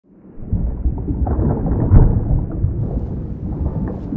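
A deep, rolling rumble with crackle through it, used as an intro sound effect. It fades in over the first half second and is loudest about two seconds in.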